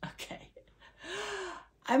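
A woman's brief breathy vocal sound about a second in, half a second long, its pitch rising then falling. A few murmured words come before it.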